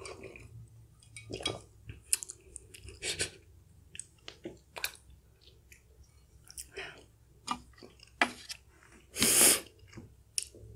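Close-miked eating and drinking sounds: swallows of milk from a mug, then scattered chewing and wet mouth clicks, with a short, loud rush of breath about nine seconds in.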